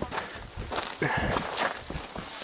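Hiking footsteps scuffing and stepping on granite boulders and grit during a rock scramble, with a few sharp clicks of shoes on rock.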